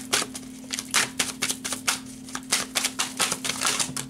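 A tarot deck shuffled by hand, the cards clacking together in a quick, irregular run of clicks, about five a second.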